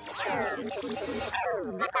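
Cartoon sound effects: a whooshing swish under falling, warbling electronic chirps like a small robot's voice, with one last slide downward near the end.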